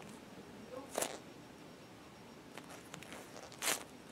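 Polyurethane foam squishy toys being squeezed and handled in quiet, with a brief soft rustle about a second in and a louder hiss near the end.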